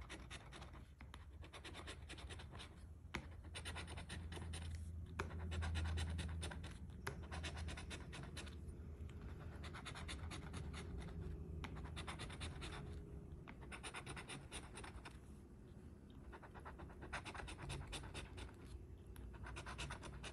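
Coin scraping the coating off a $2 paper scratch-off lottery ticket: fast, fine scratching in runs with a few short pauses. The coating is rough and takes hard scratching.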